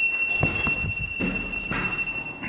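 A steady high-pitched buzzer tone, held without a break, with several dull knocks underneath.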